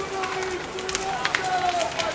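Large outdoor bonfire crackling, with sharp pops scattered through a steady rushing noise, while voices from a watching crowd call out over it.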